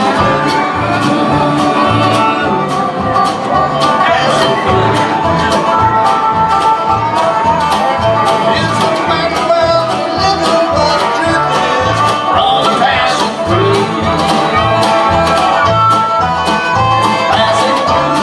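Live bluegrass band playing an instrumental passage: fiddle, strummed acoustic guitar, banjo and upright bass over a steady drum beat.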